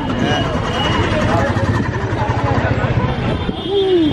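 Several voices talking over one another in a street crowd, with a motor vehicle's engine running close by underneath for most of the stretch.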